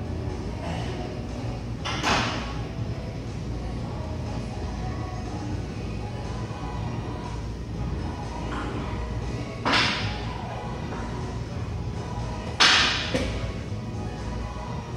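Gym background music playing steadily, broken by three sharp knocks: one about two seconds in, one around the middle, and the loudest near the end, followed at once by a smaller second knock.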